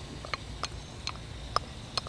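A spatula scraping and tapping diced red onion out of a small measuring cup into a glass mixing bowl, making about five light, separate ticks.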